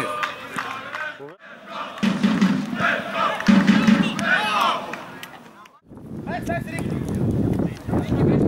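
People shouting across a football pitch, with two loud calls about two and three and a half seconds in. The sound drops out briefly twice.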